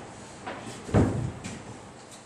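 A single dull thump about a second in, with a brief rattle after it and a few faint ticks around it.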